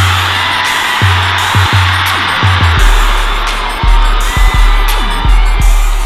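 Background music with a heavy, deep bass line that drops to a lower note about three seconds in.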